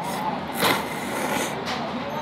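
A person slurping tonkotsu ramen noodles: a short slurp at the start, a long loud one about half a second in, and a shorter one near the end.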